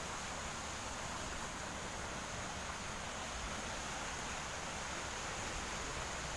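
Steady outdoor background hiss, even throughout, with no distinct events.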